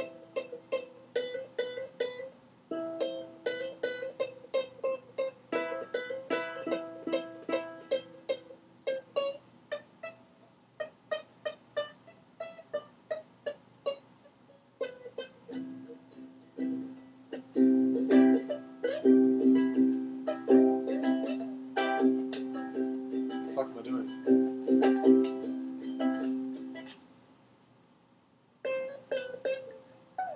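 Ukulele played by hand, a run of single picked notes and chords; about halfway through it grows louder with fuller, ringing chords, then stops briefly near the end before the picking starts again.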